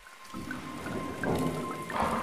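Logo-reveal sound effect: a crackling, rain-like fizz with a thin steady tone and scattered sparkling pings.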